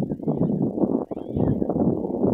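Wind buffeting the microphone, an uneven low rumble that dips briefly about a second in.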